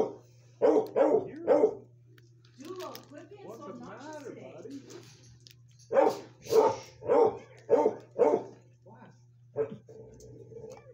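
Dogs barking in sharp bursts: three barks near the start, then quieter, wavering calls, then a run of five barks and one more near the end.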